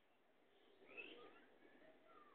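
Near silence with a few faint, short, high-pitched animal squeaks about a second in.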